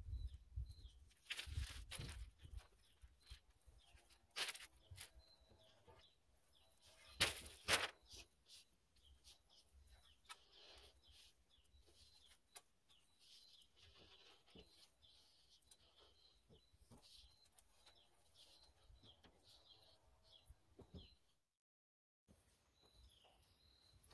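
Quiet outdoor background with a few sharp knocks and taps in the first eight seconds, the loudest about seven seconds in. Faint bird chirps follow.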